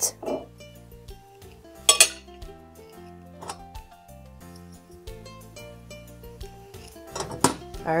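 A knife and ceramic plates clinking as the cook finishes with butter on ears of boiled corn: a few sharp clinks, the loudest about two seconds in. Soft background music plays under it.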